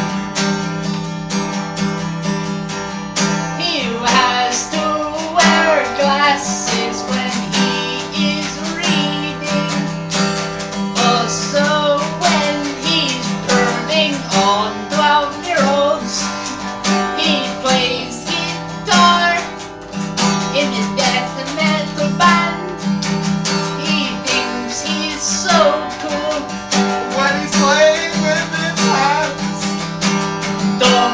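Acoustic guitar strumming chords in a steady rhythm, with a second guitar playing a wavering lead melody over it from about four seconds in: a two-guitar instrumental intro.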